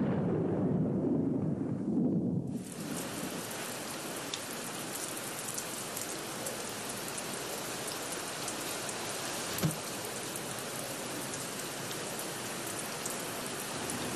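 A rumble of thunder that dies away over the first two seconds or so, giving way to steady, even rainfall. One brief knock about ten seconds in.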